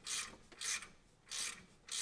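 Hand ratchet wrench clicking in three short bursts, about two-thirds of a second apart, as it is swung back and forth to back out a bolt.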